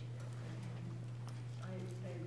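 A steady low electrical hum with a few light clicks and knocks, and faint talk coming back in near the end.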